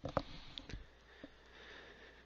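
A quiet pause at the microphone: a few soft, brief clicks and breath-like noises in the first second or so, over a faint steady low hum.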